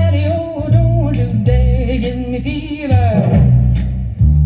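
Fender Precision electric bass strung with flatwound strings to imitate an upright bass, played along with a backing recording. The recording carries a pitched melody line and sharp clicks on the beat, a little more than one a second.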